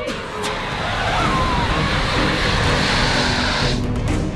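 Loud steady hiss of a pressurised smoke jet blasting a cloud of white fog from a canister, cutting off suddenly just before the end.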